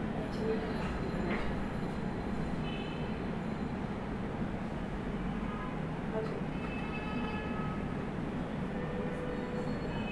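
Steady background noise with a low rumble, and faint distant voices coming and going.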